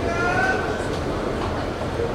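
Steady murmur of a large indoor arena crowd, with one drawn-out voice call that rises slightly in pitch during the first second.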